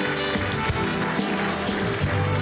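Live studio band music with violins, playing a tune with held notes over a steady beat.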